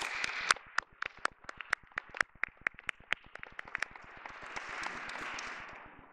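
Applause from a small group: sharp individual claps stand out at first, then the clapping thickens into a denser round and fades out near the end.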